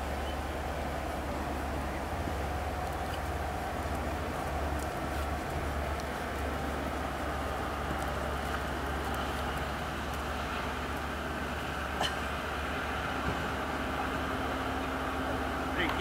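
Steady outdoor background rumble and hiss, with faint voices in the background; no distinct hoof beats stand out.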